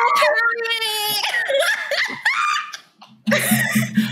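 Several people laughing and giggling, with a single spoken word among the laughs.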